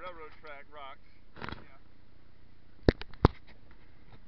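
Footsteps on a gravel and dirt trail, with a few sharp knocks, the two loudest about three seconds in. A short stretch of voice comes at the start.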